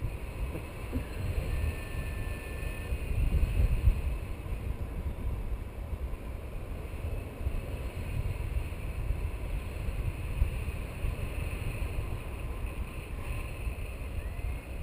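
Airflow buffeting the microphone of a camera carried in flight on a tandem paraglider: a steady, uneven low rumble of wind with no let-up.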